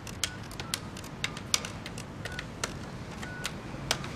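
Buttons on a desk telephone's keypad being pressed one after another to dial a number: about a dozen sharp clicks at an uneven pace, several followed by a short beep.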